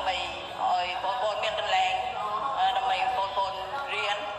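Song with a singing voice over instrumental backing, the voice holding long, wavering notes.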